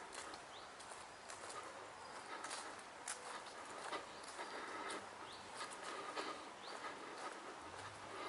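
Footsteps of someone walking over grass and a leaf-strewn earth path, each step a soft irregular knock, with a few short rising bird chirps.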